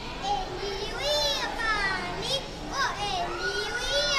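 A young boy reciting a Sindhi nursery rhyme in a high, sing-song voice, his pitch gliding up and down with some drawn-out notes.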